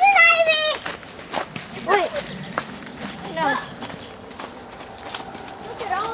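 High-pitched children's voices calling out wordlessly: one long call at the start, then shorter ones, over footsteps on a dirt trail.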